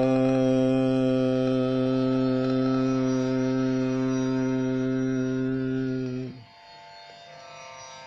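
A man's voice holding one long, steady sung note in a ghazal's wordless opening, after a short glide up into it; the note stops abruptly about six seconds in.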